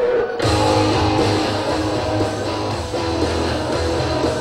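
Music with strummed guitar and bass that comes in sharply about half a second in, after a softer passage of held tones.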